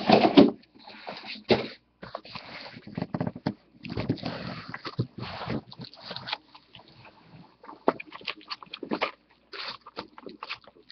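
Shrink-wrapped cardboard boxes being pushed and stacked by hand: the plastic wrap rustles and crinkles, and the boxes slide and knock together in irregular bursts, loudest at the very start.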